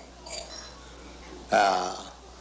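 An elderly man's voice through a microphone: one short, drawn-out voiced sound about one and a half seconds in, between spoken phrases, over a steady low hum.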